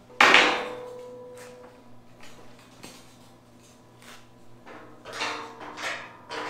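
Steel lift frame set down onto the steel pit frame: one loud clang just after the start that rings on for over a second, then lighter knocks and a few more clanks near the end as the frame is shifted into place.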